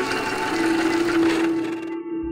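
Logo intro sound effect: a rushing whoosh of noise over a held low note, with the ringing notes of the opening chord fading underneath. The whoosh dies away near the end.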